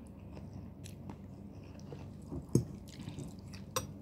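A person slurping and chewing a mouthful of noodles, with small wet mouth clicks. A sharp tap comes about two and a half seconds in, and a smaller click near the end.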